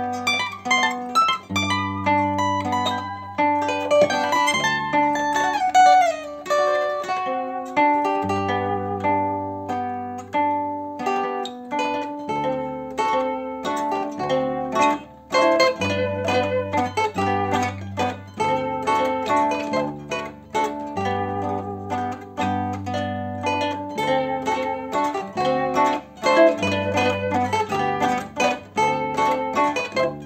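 Concert zither played solo: a plucked melody on the fretted strings over a steady accompaniment of bass notes and chords on the open strings, with a quick run of notes about five seconds in.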